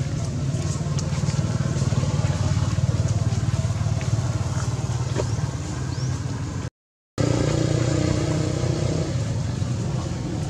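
A steady low engine hum, cut off completely for about half a second around seven seconds in.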